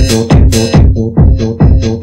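Early-1990s makina-style electronic dance music from a DJ mix: a steady, loud kick-drum beat under repeated synth chords.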